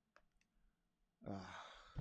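A few faint clicks of a stylus on a drawing tablet, then about a second in a breathy, sighed "uh" from the writer.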